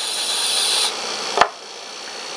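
Compressed-air blow gun hissing steadily as it blows a sample clean, cutting off about a second in. Half a second later comes a single sharp knock.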